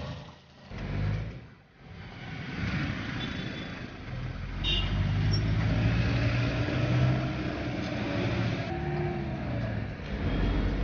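Engine and road noise of a moving minibus heard from inside, dipping twice early on and then growing louder, with street traffic around it.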